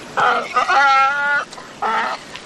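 Donkey braying: a harsh rasping breath, then a held steady-pitched note lasting under a second, then another rasping breath near the end.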